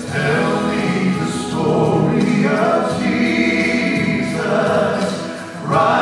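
Male gospel trio singing in close harmony through handheld microphones and a PA, with a short break between phrases near the end before the voices come back in.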